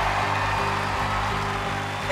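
Background show music with sustained low chords, with a crowd cheering and clapping underneath.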